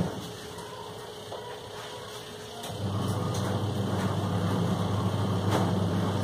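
A steady low machine hum that cuts out suddenly at the start, leaving quieter room sound, and comes back abruptly a little under three seconds in.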